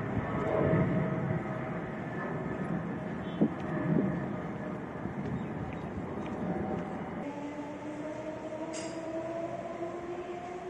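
Rumbling noise with two short knocks, then from about seven seconds in a steady electric whine that rises slowly in pitch, that of a Dubai Metro train picking up speed.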